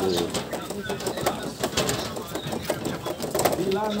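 Indistinct voices of several people talking, with frequent sharp clicks throughout.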